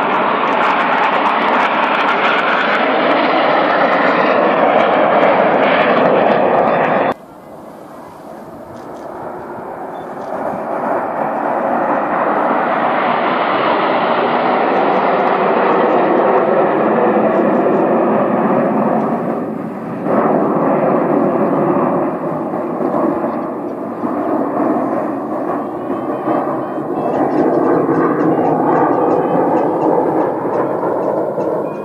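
Jet noise from the Red Arrows' BAE Hawk T1 trainers and their Rolls-Royce Turbomeca Adour turbofans as they fly the display overhead. The sound cuts off abruptly about seven seconds in, then builds again over several seconds as the formation approaches, and stays loud.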